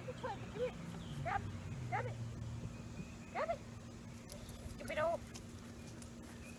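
A dog giving short, excited yips and whines, about six of them at uneven intervals.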